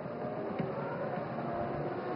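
Faint, steady trackside sound of distant Formula One V10 engines running under the safety car, as picked up by the broadcast's track microphones.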